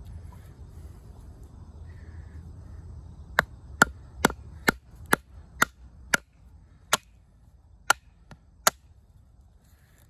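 A wooden baton striking the spine of an OdenWolf W3 fixed-blade knife, driving its 440C steel blade lengthwise through a green branch to split it. About eleven sharp knocks begin a few seconds in, roughly two a second at first, then further apart.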